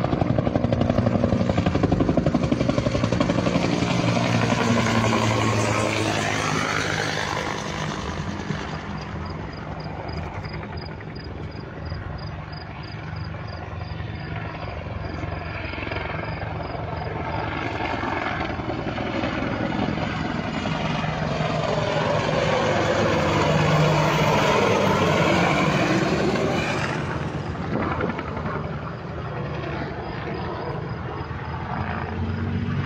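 Helicopter flying past, its rotor and engine loud at first, fading in the middle, then growing loud again and passing close near the end before fading.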